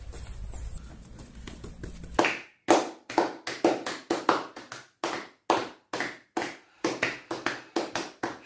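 A string of sharp clicks or taps, about three a second and slightly uneven, starting about two seconds in after a low outdoor hum cuts off.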